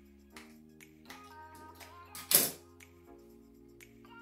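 Quiet background music with held chords and small ticks. A little over two seconds in comes one short, loud snip: scissors cutting through a bunch of the jig's rubber skirt strands.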